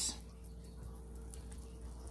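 Faint soft handling noise as a silicone spatula lifts a toasted bun off the plates of an open electric waffle iron, over a steady low hum.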